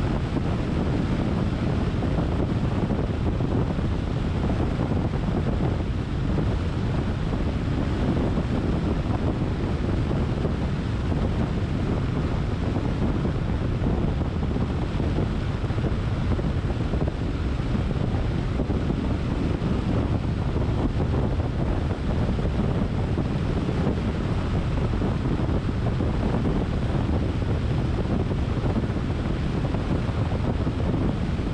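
Steady low rumble of wind rushing over the microphone and tyre noise from a car driving at a constant speed on an asphalt road, with no breaks or changes.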